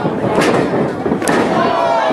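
Two sharp impacts from action in a wrestling ring, the first a little under half a second in and the second about a second later, over spectators shouting.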